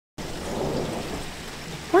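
Rain falling with a low rumble of thunder, starting abruptly a moment in.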